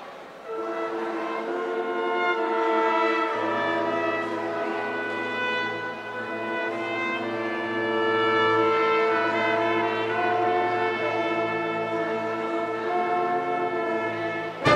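Marching band brass section of trumpets, horns and low brass playing held, sustained chords. A low bass line comes in about three seconds in.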